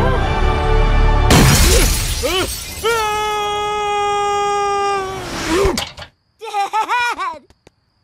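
Cartoon soundtrack: music, then a sudden loud crash about a second in, followed by Homer Simpson's long held yell as he tumbles. The sound cuts off abruptly near six seconds, and a few short cries follow.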